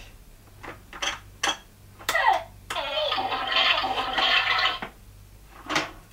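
Plastic toy playset handled with a few light clicks, then a short falling electronic sound and a steady electronic sound effect of about two seconds from the playset's small speaker.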